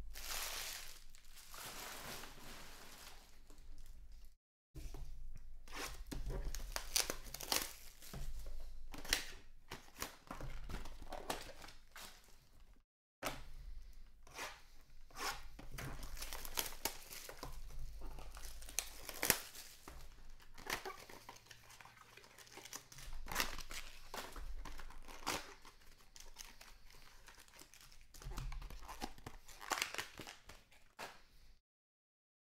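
Foil trading-card pack wrappers crinkling and tearing open, with cards and packs handled on the table in quick rustles and clicks. The sound cuts out completely twice, briefly.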